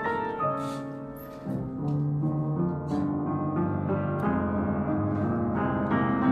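Upright piano being played: sustained chords under a melody line. It softens about a second in, then picks up again with fuller chords.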